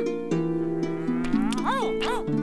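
Plucked harp music plays steady notes. Over it, a high, voice-like sound rises slowly, then swoops up and back down twice near the end.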